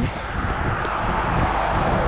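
A car driving past on the road, its tyre and engine noise swelling to a peak about halfway through and then easing off.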